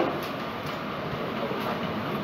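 Steady background noise with no voice: the room tone and hiss of a lecture-hall recording.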